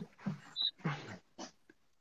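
Soft laughter heard over a video call: a few short, breathy bursts of laughing between greetings.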